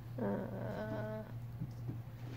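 A woman's drawn-out, hesitant "uh", held at one pitch for about a second, over a steady low hum.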